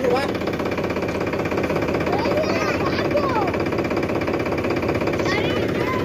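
Powertrac Euro 50 tractor's diesel engine idling steadily close by, with a fast, even pulse.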